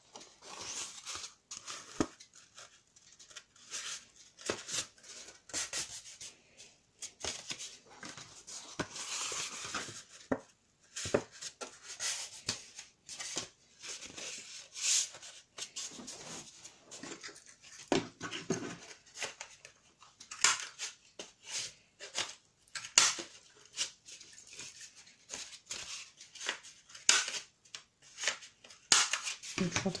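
Kraft cardstock sheets being handled, slid and folded on a desk: irregular paper rustles and scrapes with light taps and clicks.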